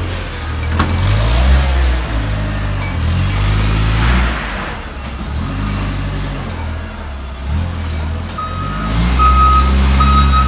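Propane-fuelled Hyster forklift engine, its pitch rising and falling as it drives and works the load. From about eight seconds in, its reversing alarm beeps at a steady, regular pace as it begins to back out.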